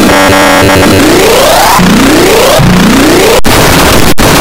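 Loud, harshly distorted, effects-processed audio: a dense noisy din in which three rising pitch sweeps follow one another through the middle, with a brief sharp cut-out near the end.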